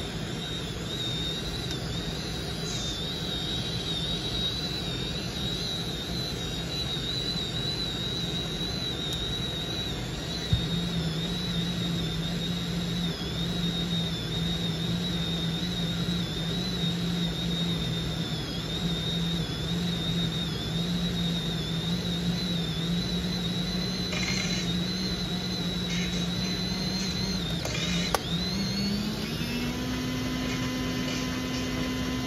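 Seagull SC198 compact film camera's built-in motor rewinding the finished roll of film automatically, a steady motorised whir with a high whine over it. About 28 seconds in there is a click and the motor's pitch rises.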